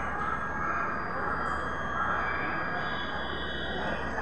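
Passenger train coaches rolling past close by, a steady rumble and clatter of wheels on the track.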